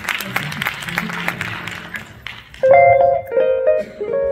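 Audience applause, then about two and a half seconds in an archtop jazz guitar starts the song's intro with ringing sustained notes, louder than the clapping.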